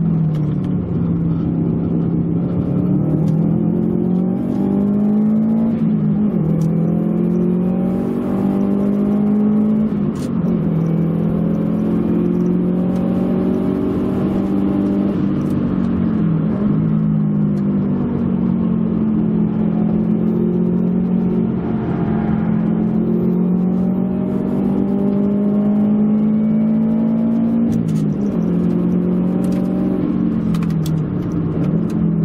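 Subaru Impreza WRX (GDA)'s turbocharged flat-four engine, heard from inside the cabin while driven hard. Its note climbs steadily and falls back sharply several times.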